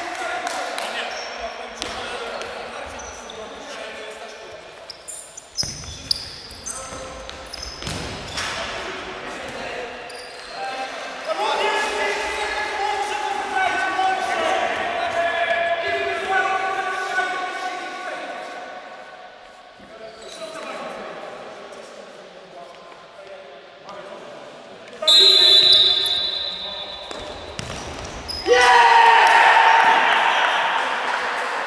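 Futsal ball being kicked and bouncing on a sports-hall floor, the knocks echoing in the large hall, with players calling out. Near the end, a short high whistle blast, then loud shouting.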